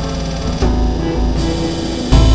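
Electronic trance music: a strong low bass under layered steady pitched tones, with a new bass note coming in about half a second in.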